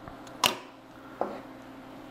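Two knocks of a kitchen knife on a wooden cutting board while slicing cherry tomatoes: a sharp one about half a second in and a softer one a little after a second.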